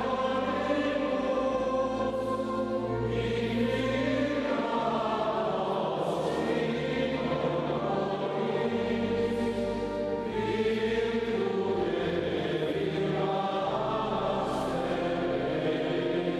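Choir singing a slow liturgical hymn in a reverberant cathedral, sustained chords changing every second or two over held low bass notes.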